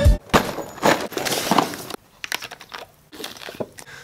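Music cuts off just after the start, followed by about a second and a half of crinkling, crunching handling noise, then a few faint clicks and knocks.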